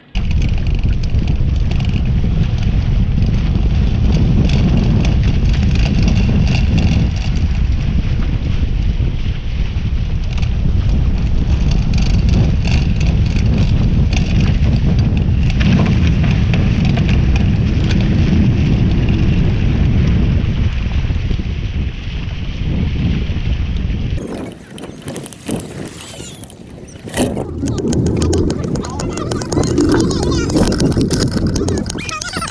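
Strong wind buffeting the camera microphone, mixed with water rushing and spraying off the hull of a Hobie 16 catamaran sailing fast. About 24 seconds in it gives way abruptly to quieter, broken sounds.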